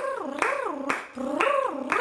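A single voice wailing in long swoops, its pitch falling and rising about three times.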